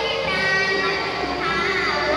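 A young performer's voice singing a Khmer yike melody through a stage microphone and PA, in long held notes that bend and waver in pitch.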